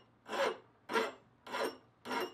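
Hand file rasping across the edge of a cast bronze hatchet head, cutting a chamfer by hand: three even push strokes a little over half a second apart, with short pauses between them.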